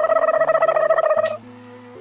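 A woman's high-pitched, closed-mouth squeal held for just over a second, then cut off: a reaction to a sour taste. Background music continues underneath.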